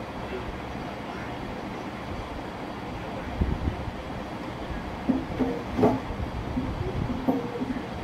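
A steady rumbling background noise, with a few low thumps of the camera being handled about three and a half seconds in, then faint, muffled bits of voice in the second half.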